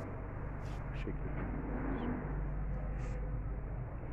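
A steady low mechanical hum runs throughout, with a few brief high chirps over it.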